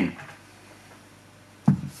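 Quiet room tone, then a single short thump near the end as a Google Home smart speaker is set down on a wooden table.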